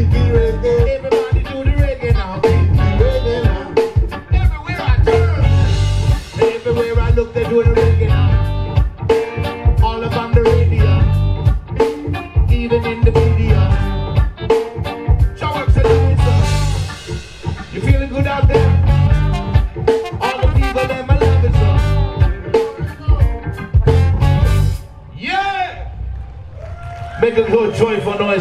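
Live reggae band playing: drum kit, bass, electric guitars and trombone over a steady, evenly pulsing groove, with vocals. The song ends about three and a half seconds before the end.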